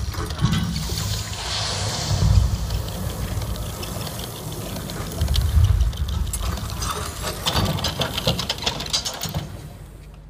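Sound design from a projection-mapping show played over loudspeakers: deep booms and a rushing, hissing wash. In the last few seconds comes a run of sharp mechanical clicks, and then it all fades just before the end.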